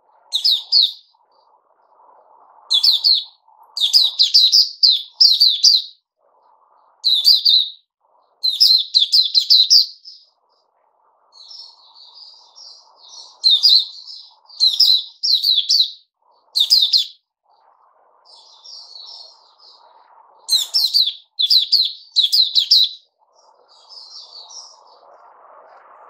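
A caged white-eye chirping and singing in short bursts of rapid, high notes: about a dozen quick phrases with brief gaps, and a pause of about a second just before the middle.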